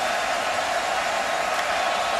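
Steady crowd noise from a packed football stadium as the offense waits for the snap, an even wash of sound with no single event standing out.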